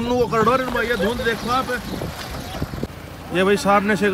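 Mostly men talking, with a low steady vehicle rumble underneath and a brief quieter lull in the middle.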